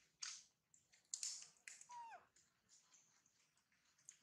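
Faint, short crunching noises as a macaque chews food, with a brief falling squeak about two seconds in.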